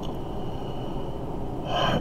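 A man's audible intake of breath near the end, a short airy gasp as he pauses between sentences. Under it is a steady low room background with a faint high-pitched tone.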